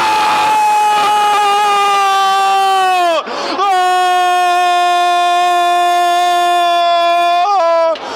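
A football commentator's long drawn-out goal cry, "gooool", held on one high steady note. The first held note ends about three seconds in; after a quick breath a second held note runs about four seconds and breaks off near the end.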